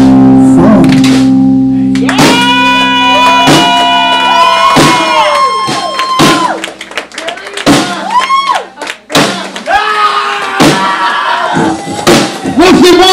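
Live rock band: a held guitar and bass chord under long, gliding sung notes, then a run of separate drum and cymbal hits from the drummer, like the close of a song.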